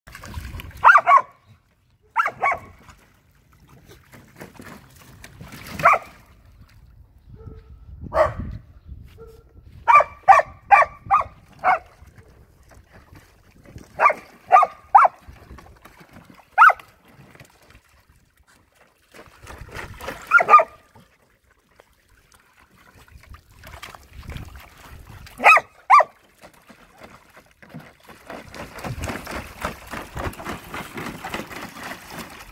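Dog barking in short bursts during play: single barks and quick runs, with five in fast succession about ten seconds in. Near the end, water splashing in a plastic paddling pool.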